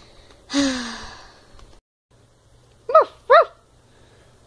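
A breathy vocal sound falling in pitch about half a second in, then two quick, high yapping barks near the end, like a small dog.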